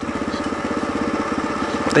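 Kawasaki KLR650's single-cylinder four-stroke engine running steadily while riding, with an even, rapid pulse of about twenty-odd beats a second.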